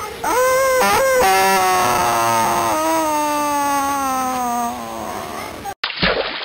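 A child's voice cries out, then holds one long wail that slides slowly down in pitch for about four seconds before stopping.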